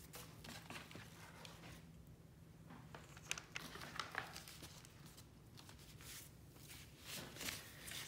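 Faint, scattered rustling and crinkling of stain-soaked parchment (baking) paper being handled and rubbed down by a gloved hand, over a faint low hum.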